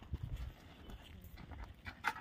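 Footsteps of two people walking on dry, loose field soil: soft, irregular scuffing steps, with a sharper click near the end.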